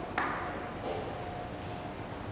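A single sharp click with a brief ring about a quarter second in, over a faint steady tone in the room.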